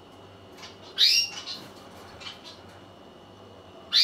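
A bird calling: a short, loud, rising call about a second in and another just at the end, with fainter chirps between.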